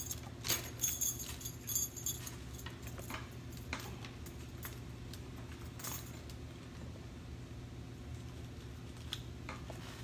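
Metal costume jewelry (bangles and necklaces) jingling and clinking as it is handled and taken off its hooks: scattered light clinks, thinning out in the middle, over a steady low hum.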